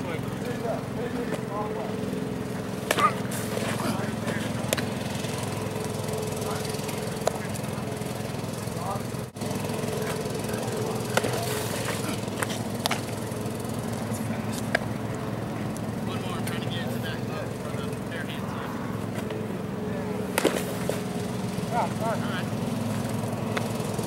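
A ride-on mower's engine drones steadily across the field. A few sharp pops sound over it as pitches smack into a catcher's mitt, about three seconds in, around eleven seconds and again near twenty seconds.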